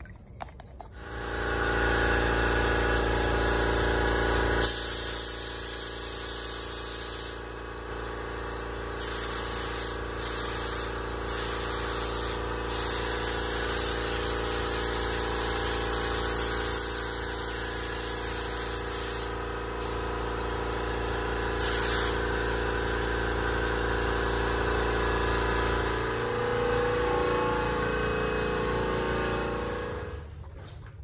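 Air-powered spray gun hissing as it sprays base coat onto a motorcycle rear fender, on and off in stretches with each trigger pull. A steady machine drone runs underneath.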